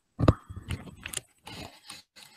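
Handling noise on a video-call microphone: a sharp knock about a quarter second in, then clicks, rattles and rustling as the device is picked up and moved.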